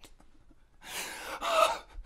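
A person's breathy gasps, starting about a second in: two short, airy breaths.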